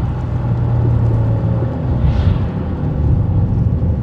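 Audi RS6 (C6) heard from inside the cabin while braking: steady low road and drivetrain rumble, a faint tone that sinks slightly, and a short scraping hiss about two seconds in. This is a braking noise whose cause is unclear: the driver's guess is the wheel-arch liner, though he is fairly sure it cannot be that.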